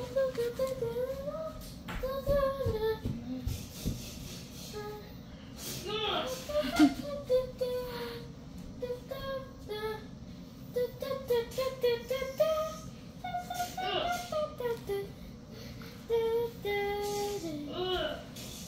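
A child's high voice singing a wordless tune throughout, sliding up and down in pitch with a few held notes.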